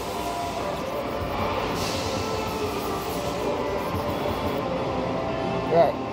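Steel knife blade being ground back and forth on a fine sharpening stone, over background music and a steady room hum. A brief voice sound comes near the end.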